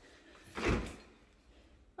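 A stainless-steel dishwasher door is pulled down open, giving a single clunk about half a second in that lasts about half a second.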